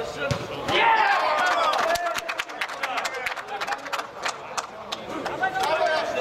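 Footballers shouting during an indoor match, followed by a run of short, sharp knocks and thuds from the ball and play on the pitch.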